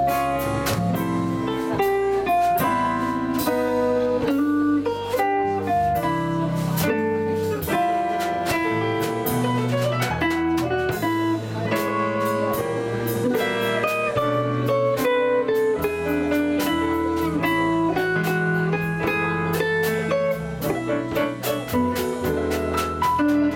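Live jazz combo playing: archtop electric guitar lines over upright bass, drums with cymbals, and digital piano.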